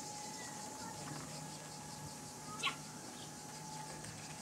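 Steady, finely pulsing high-pitched drone of cicadas singing in the trees, over a faint steady hum. One brief high chirp cuts through a little past halfway.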